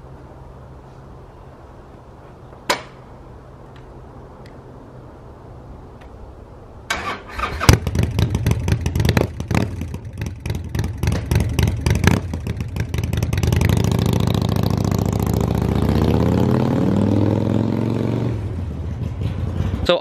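Harley-Davidson Sportster Iron 1200's air-cooled V-twin, fitted with a Vance & Hines Shortshots Staggered exhaust and a high-flow air intake, starting about seven seconds in and running with an uneven, loping beat. From about thirteen seconds the engine climbs in pitch and stays loud for several seconds, then eases off near the end.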